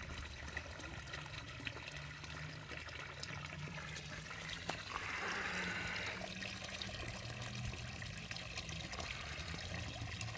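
Water trickling steadily in a garden pond over a low hum, with a brief louder rush of water about halfway through.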